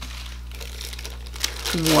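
Plastic bag crinkling as a ceramic wax warmer is unwrapped from it, with one sharper crackle about one and a half seconds in.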